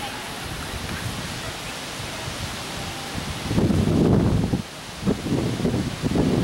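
Wind on the microphone over a steady outdoor hiss, with a stronger low gust starting about three and a half seconds in and lasting about a second, and another near the end.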